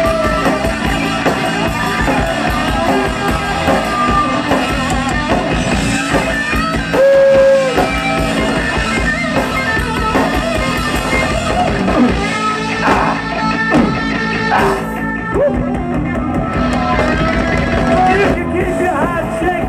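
A live punk rock band playing loudly on electric guitar, bass and drum kit. A single held note stands out about seven seconds in.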